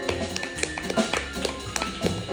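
Live jazz from a piano trio: grand piano, upright double bass and drum kit, with frequent sharp drum and cymbal strikes over a walking bass line.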